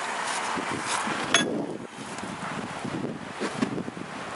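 Scraping and knocking as a bare engine block is turned over by hand on a wooden workbench, with one sharp metallic clink a little over a second in.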